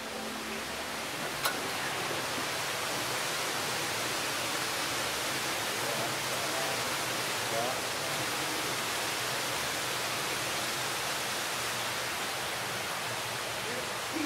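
Steady rush of a large artificial waterfall pouring into a swimming pool, with a single click about a second and a half in and faint voices in the background around the middle.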